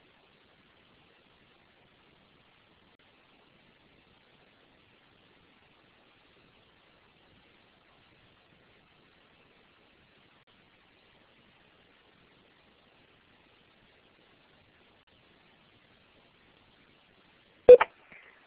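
Near silence over a web-conference line, with only a faint hiss: the video being played is not coming through. A short, sharp, loud sound comes near the end.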